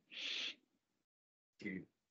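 A short breathy puff of air from a person on a video call, lasting about half a second, then dead silence, then the start of a spoken word near the end.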